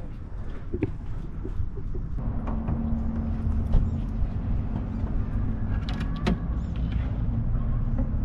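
Car engine idling, a steady low hum that comes in about two seconds in, with a few light clicks and knocks.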